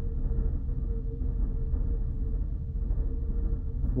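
Classroom room tone: a steady low rumble with a faint steady hum.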